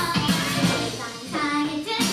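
Girls' idol group singing an upbeat pop song in young female voices over a recorded backing track with a steady dance beat.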